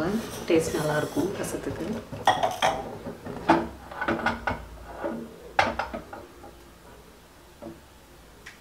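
Clinks and knocks of a small metal tempering pan being set down and shifted on a gas-stove grate, a string of sharp separate strikes that thin out and fade near the end.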